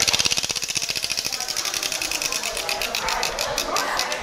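Spinning prize wheel ticking as its pointer flicks over the pegs, a rapid run of clicks that slows steadily as the wheel winds down.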